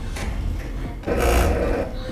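DJI RS2 gimbal's motors buzzing and vibrating as it runs its automatic calibration, shaking the table it stands on. A low hum runs throughout, with a louder buzzing stretch from about one second in to near the end.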